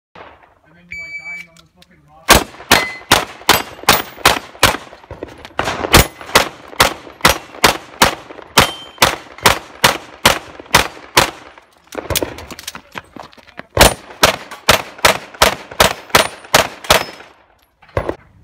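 Electronic shot timer's short start beep, then a handgun fired in rapid strings of shots for about fifteen seconds, with a pause of under two seconds partway through.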